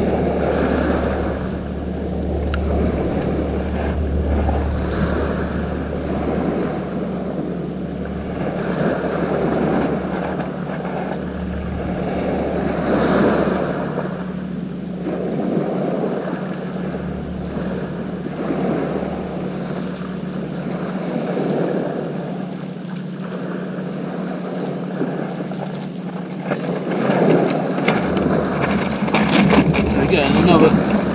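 Waves washing on a shingle beach, swelling and fading every few seconds, with wind rumbling on the microphone and a steady low hum underneath; the noise grows louder and busier near the end.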